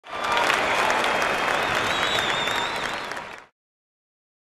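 Audience applause, a dense patter of many hands clapping, with a high wavering tone over it for about a second near the middle. It tapers and cuts off abruptly about three and a half seconds in.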